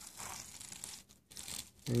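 Thin plastic cutting mat rustling and crinkling as it is shifted by hand over the magnets, faint, with two brief pauses in the second half.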